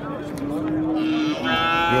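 A calf mooing: a long, steady, low call, then a second, louder and fuller-toned moo starting about one and a half seconds in.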